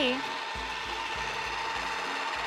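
Small electric motor of a toy pottery wheel running with a steady thin whine, with low repeating notes underneath.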